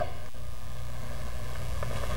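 Steady low hum of room tone, with no other sound standing out.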